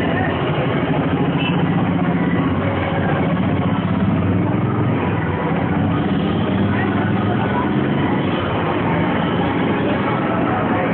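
Engines of slow-moving cars running in crawling traffic, a steady low rumble, with voices of people walking alongside.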